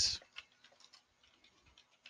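Faint, irregular clicks of keys being typed on a computer keyboard, a name being entered letter by letter.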